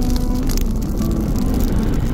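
Cinematic logo-reveal sound effect: a loud, noisy rushing whoosh with crackles, over a few held musical tones.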